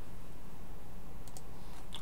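Steady low hum of room and microphone noise, with a few faint clicks about a second and a half in.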